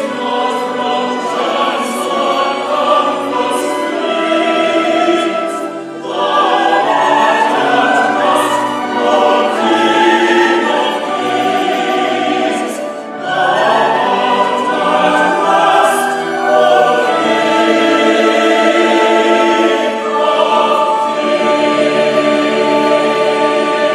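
Live classical-style performance: a male vocal trio and a choir singing with orchestral accompaniment in sustained phrases, with brief dips where new phrases begin about six and thirteen seconds in.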